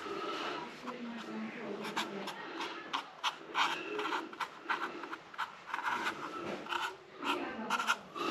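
Felt-tip marker writing on the plastic lid of a Wago junction box: a run of short, scratchy pen strokes, several a second, as the letters are drawn.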